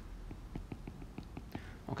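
Faint, quick ticks of a stylus tapping and scratching on a tablet screen during handwriting, about four a second.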